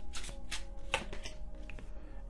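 A deck of oracle cards being shuffled by hand: a quick run of short card flicks and slaps, over soft background music.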